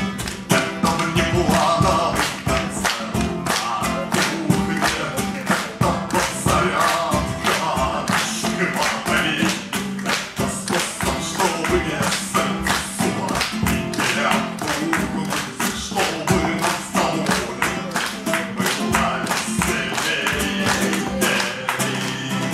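A man singing a Russian song to a strummed classical (nylon-string) acoustic guitar, the strumming steady and driving.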